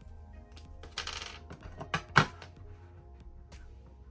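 A small craft cutter being readied to trim sticker sheets on a desk: a short scraping rustle about a second in, then two sharp clicks near the middle, the second the louder, as the tool and its cap are handled. Soft background music runs underneath.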